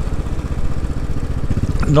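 Royal Enfield Classic 500's single-cylinder engine running at a steady cruise, heard from the saddle as an even run of low beats. A voice starts near the end.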